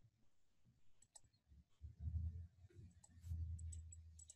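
Faint clicking at a computer as the slides are advanced: a few sharp ticks, about a second in and several more near the end, over low, dull bumps.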